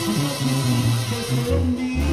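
Live Mexican banda playing: sousaphone, trombones, trumpets and drums in a full instrumental passage, the sousaphone stepping through held bass notes and dropping lower near the end.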